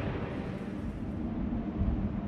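A thunder sound effect: a low rumble dying away, with a brief swell near the end.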